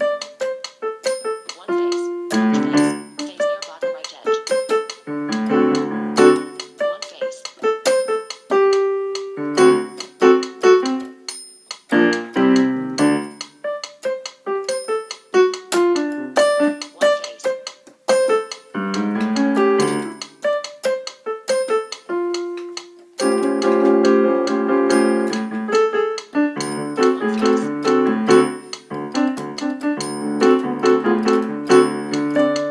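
A keyboard with a piano sound played solo, a melody over chords in uneven phrases with short breaks, building to a denser stretch of held chords about three-quarters of the way through.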